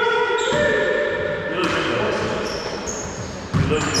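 Paddleball rally on a hardwood racquetball court: long, high squeaks of sneakers on the floor, and one sharp hit of the ball about three and a half seconds in, ringing in the enclosed court.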